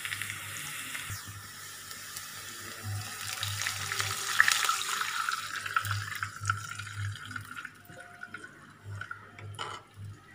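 Water poured into a pan of onions frying in hot oil: a splashing, hissing pour that is loudest in the middle and dies away over the last few seconds.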